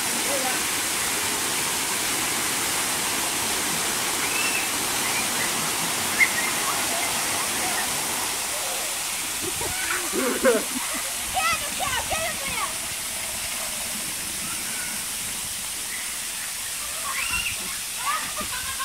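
Splash-pad water jets and a fountain pouring water, a steady hiss of spraying and falling water. Brief voices shout about ten seconds in and again near the end.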